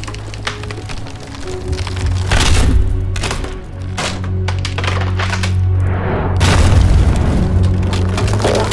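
Dark film score with a steady low drone, overlaid with heavy booming impacts from about two seconds in, and wood cracking and splintering. These are sound effects for a giant clawed creature stomping through a forest and breaking trees.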